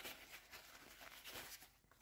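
Near silence, with faint, soft rustling of a paper towel wiping a fountain pen.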